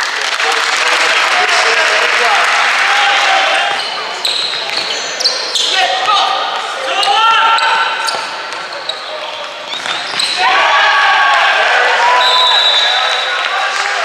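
Indoor futsal play on a wooden sports-hall floor: sneakers squeaking in short sliding chirps, the ball being struck and bouncing, and players' voices calling out.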